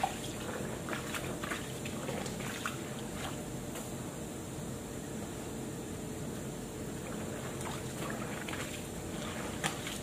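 Clothes being washed by hand: wet garments squeezed and wrung over a basin, water trickling and splashing, with a few short splashes or knocks scattered through.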